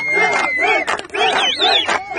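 A Kohistani song: several voices sing a fast, repeating line in quick rising-and-falling turns over a held high tone, with a sharp drum-like strike about a second in.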